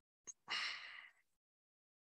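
A faint click, then a short breath of about half a second, drawn in through a microphone.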